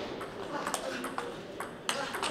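Table tennis ball struck back and forth in a rally, clicking off the rackets and bouncing on the table: a string of sharp ticks, about two a second, the loudest near the end.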